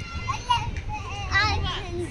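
Children's voices, high-pitched calls and chatter while they play, with a squeal about halfway through.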